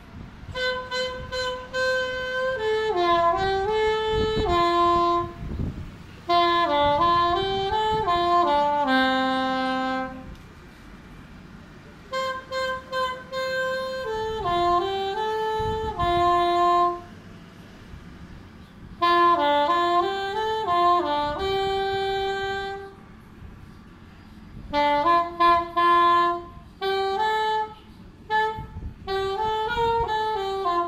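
A small black plastic saxophone-style woodwind playing a slow single-line melody in four phrases, with short pauses between them.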